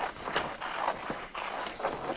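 Scissors cutting through sheets of colored paper, a handful of uneven snips mixed with paper rustling as the sheets are turned.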